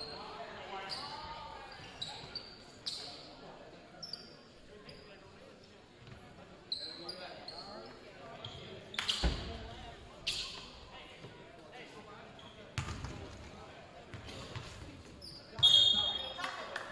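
A basketball bouncing on a hardwood gym floor, with louder thuds about nine and thirteen seconds in, and short high sneaker squeaks on the floor. Voices of players and spectators carry through the echoing gym.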